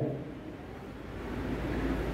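A low, faint rumble that grows a little louder about a second in, during a pause between a man's words into a microphone.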